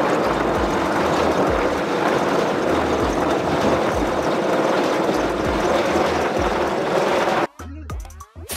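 Search and rescue helicopter hovering: loud rotor and turbine noise with recurring low thumps from the blades. It cuts off suddenly near the end, and a short ringing, gliding jingle begins.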